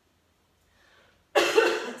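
A woman coughs suddenly and loudly about a second and a half in, after near silence: a lingering cough that is still hanging on.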